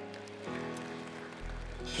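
Soft sustained chords from a church worship band, with a low bass note entering about one and a half seconds in.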